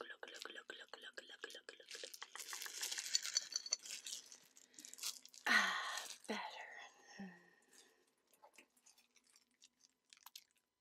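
Close-miked mouth sounds: rapid dry clicks and crackles for the first four seconds, then three short voiced sounds, each falling in pitch, around the middle, fading to a few faint clicks.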